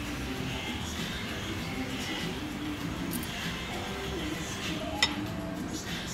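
Quiet background music in a café, with a single sharp clink of tableware, cutlery against a plate, about five seconds in.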